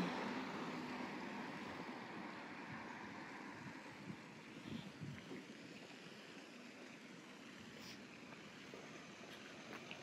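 Faint road traffic noise that fades over the first few seconds and settles into a low, steady city hum.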